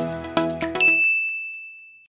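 Background music with a regular beat that stops about a second in, overlapped by a single high ding sound effect that rings on and fades away.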